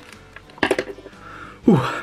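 Quiet background music, with a few sharp clicks and a rustle a little over half a second in as a mystery pin box's packaging is opened by hand. A voice says 'ooh' near the end.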